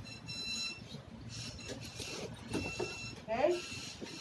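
Indistinct voices in a small room with a faint steady high-pitched whine that comes and goes, then a speaker says "Okay?" near the end.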